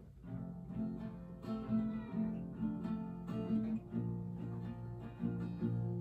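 Acoustic guitar starting about a quarter second in and playing chords, with the notes ringing on.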